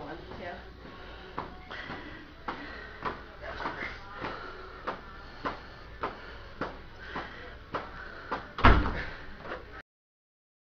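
Heavy battle ropes slapping a carpeted floor in a steady rhythm, a little under two slaps a second, with one louder thump near the end before the sound cuts off.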